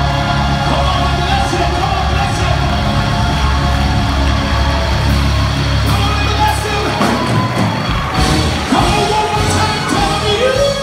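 Gospel choir singing held chords over a band with heavy bass, with some shouting from the congregation. About seven seconds in, the bass drops away.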